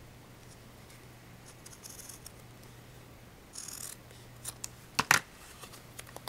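Scissors snipping through canvas fabric at the corner of a covered board, with faint scraping and a short rasping cut a little past halfway. Near the end come sharp clacks as the scissors are put down on the table.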